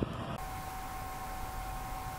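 Low background rumble that cuts off abruptly a fraction of a second in, giving way to a steady hiss with two faint steady high tones: the recording's own background noise, with no other sound.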